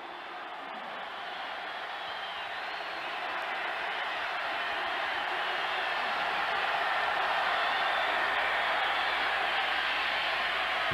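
Football stadium crowd noise growing steadily louder as the crowd reacts to a long pass play developing into a touchdown.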